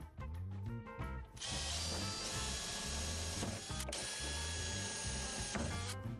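Cordless drill running steadily, boring into a wooden planken cladding board, starting about a second and a half in and stopping just before the end. Background music with a bass line plays throughout.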